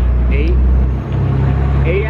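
A motor vehicle's engine idling, a steady deep drone that dips briefly about a second in.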